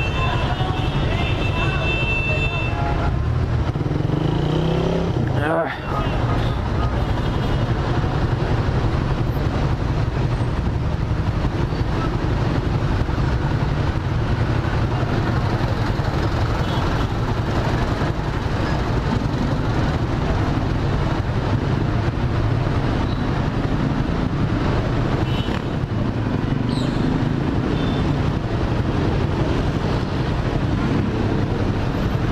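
Suzuki Raider 150R single-cylinder motorcycle engine running at low speed in slow, congested traffic, under a steady low rumble of surrounding vehicles. The sound dips briefly about six seconds in.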